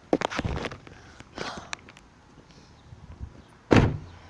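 Rustling and knocking from a handheld phone being handled and rubbed against clothing, in a few short bursts, with a loud thump near the end.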